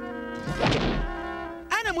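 Cartoon background music holding a steady chord, with a dull thunk sound effect about half a second in; a voice says a word near the end.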